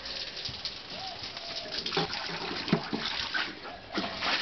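Beer poured from a bottle splashing steadily over a man's head and onto the ground, with short voice-like noises and a few knocks. Right at the end a tub of ice water starts to tip, with a sudden splash.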